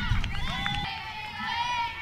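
Distant voices of players and spectators calling and shouting across a softball field, several at once, over a low outdoor rumble.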